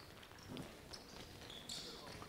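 Faint footsteps of several players running and shuffling on an indoor court floor.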